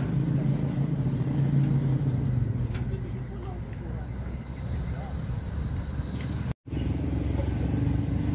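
A motor running with a low, steady hum. The sound drops out for an instant about six and a half seconds in.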